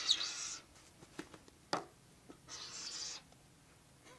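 Pencil writing on paper: two short bouts of scratching, each about half a second, with a light tap in between.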